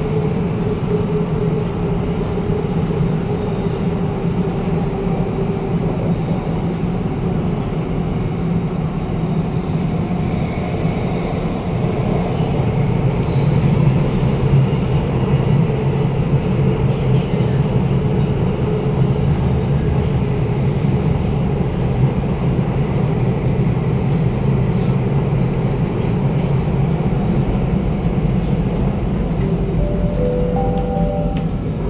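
Bombardier Movia C951 metro train running, heard from inside the carriage: a continuous rumble with steady low humming tones that get a little louder about halfway through.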